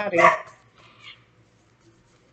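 A spoken word trailing off, then near-quiet room tone with a faint, brief sound about a second in.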